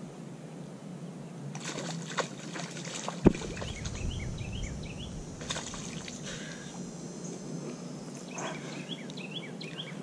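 Hooked bass thrashing and splashing in the shallows as it is landed by hand. There are irregular water splashes, and a sharp knock about three seconds in.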